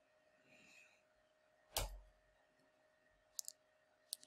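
Near silence with a few computer keyboard keystrokes: one short soft click a little under two seconds in, then two quick faint clicks shortly before the end.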